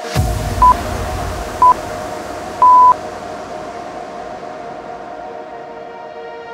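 Interval-timer countdown beeps over electronic background music: two short high beeps a second apart, then one longer beep that marks the end of the work interval and the start of the rest.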